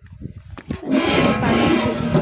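A cow lowing: one long, loud call that starts about a second in, over a low rumble of wind or handling noise on the microphone.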